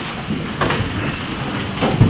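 People getting up and moving about in a courtroom as the hearing closes: a steady low rumble of shuffling and chair movement, with knocks about half a second in and again near the end.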